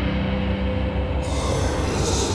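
Death-metal band recording: a dense, harsh wall of distorted instruments with no pauses, and a bright hissing top end coming in a little over a second in.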